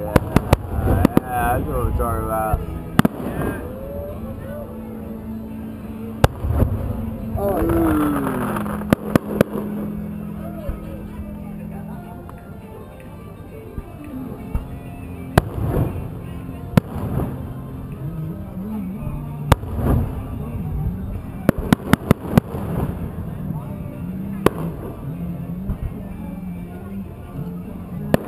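Aerial fireworks shells bursting: a run of sharp bangs, some single and some in quick clusters of several, near the start, around nine seconds and just past twenty seconds.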